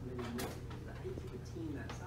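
A bird calling with short, low repeated notes, a few of them gliding, over a steady low hum.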